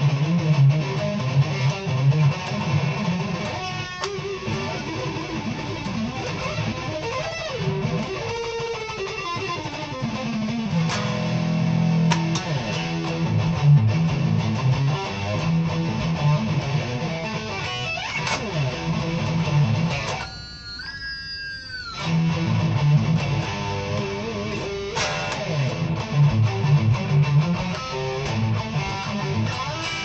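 Electric guitar, a Stratocaster-style solid body, played as a solo: fast lead lines over a steady low-string part, with a falling slide partway through. About twenty seconds in, the low part stops for a moment while one high note is bent upward and left ringing.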